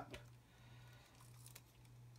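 Near silence: room tone with a low steady hum and a few faint ticks.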